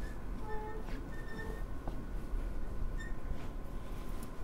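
Quiet hall room tone: a steady low rumble with a faint steady hum, and a few brief faint tones scattered through.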